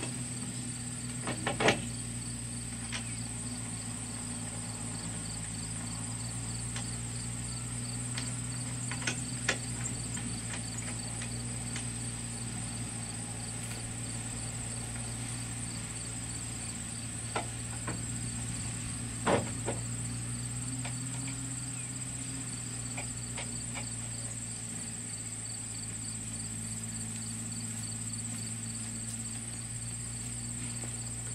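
Steady chorus of crickets trilling over a low steady hum, broken by a few sharp knocks from handling the wooden solar panel mount and its tilt hardware. The loudest knocks come about two seconds in, around nine and a half seconds, and around nineteen seconds.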